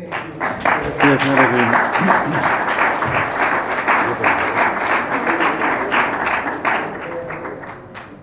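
Applause: many people clapping together, starting just after the start, holding steady, then thinning out and dying away near the end.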